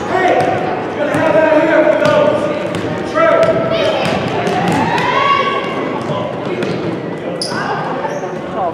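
Basketball bouncing on a hardwood gym floor as it is dribbled up the court, with voices shouting over it, all echoing in the gymnasium.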